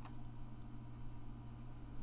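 Quiet room tone with a steady low electrical hum, broken by one short click right at the start.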